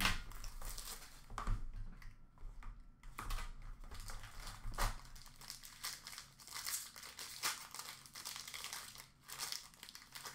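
Hockey card pack being opened by hand: the wrapper crinkles and tears, and the cards are handled, in irregular short rustles and crackles.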